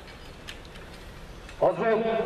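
Low steady outdoor hush, then about one and a half seconds in a man's loud, drawn-out shouted ceremonial command begins and is held through the end.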